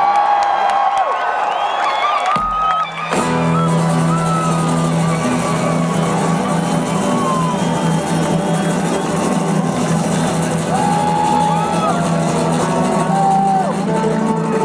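Acoustic guitars played live at a fast pace, with a crowd cheering and whooping over the music; the playing drops off briefly about three seconds in, then a steady low note comes in.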